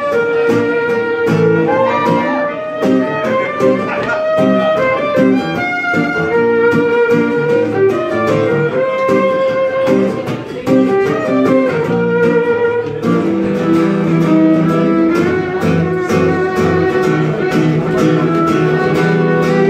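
Live blues band playing an instrumental passage: a bowed fiddle plays long, sliding melody notes over strummed acoustic guitar and electric guitar.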